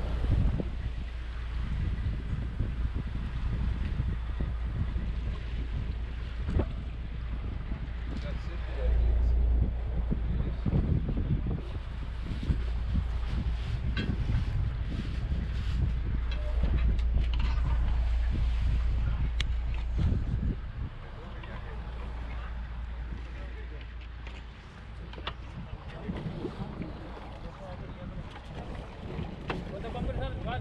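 Wind rumbling on the microphone aboard a boat, a steady low buffeting with a noise haze of wind and water over it; the rumble drops noticeably about two-thirds of the way in.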